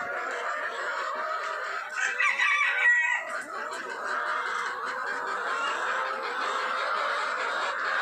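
A flock of hens clucking and calling continuously, with a louder call a little over two seconds in.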